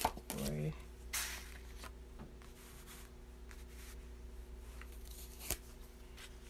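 Tarot cards being handled and laid down on a cloth-covered table: a soft swish of a card sliding about a second in, then a few faint taps and clicks, over a low steady hum.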